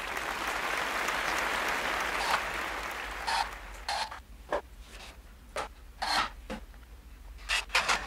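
An ebony veneer being pressed down by hand onto a freshly glued guitar headstock: a steady rub for about three seconds, then a string of short scrapes and knocks as it is screwed and clamped in place.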